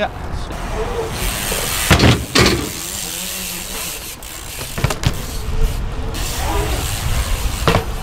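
Dirt-jump bike tyres rolling on a concrete skatepark with a steady rushing hiss, broken by a few sharp knocks from the bikes: two about two seconds in, one at about five seconds and one near the end.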